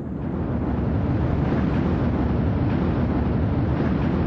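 Ariane 5 ES rocket lifting off, its Vulcain 2 main engine and two solid rocket boosters firing. It makes a loud, steady rumble that grows a little in the first half-second.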